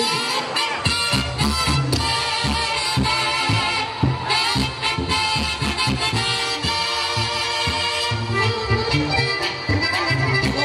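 Live Mexican band music: an instrumental passage of horns and saxophones over a steady drum and bass beat, with no singing, as the announced song begins.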